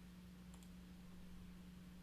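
Near silence with a steady low electrical hum and two faint computer clicks about half a second in.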